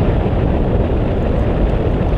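Steady wind buffeting on an action camera's microphone from the airflow of a tandem paraglider in flight: a loud, even, low rumble.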